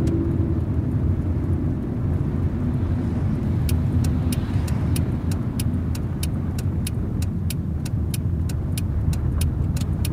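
Steady engine and tyre rumble inside a moving car's cabin. From about four seconds in, the turn-signal indicator ticks evenly at about three clicks a second, signalling the left turn at the intersection ahead.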